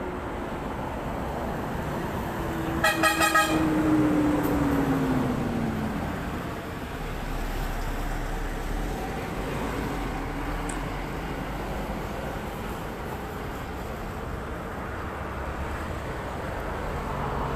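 Roadside traffic noise. About three seconds in, a vehicle horn gives four quick toots, the loudest sound. Just after, a passing vehicle's engine note drops in pitch.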